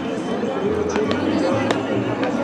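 Overlapping chatter of several voices, players and spectators talking at once with no clear words, with a couple of sharp clicks about a second in and near the end.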